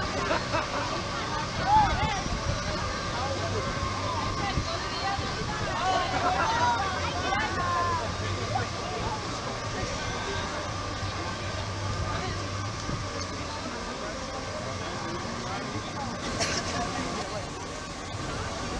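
Background chatter of people walking by outdoors, with voices rising and falling, over a steady hum.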